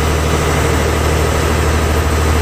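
A boat's engine running steadily, a loud, deep drone that holds even throughout.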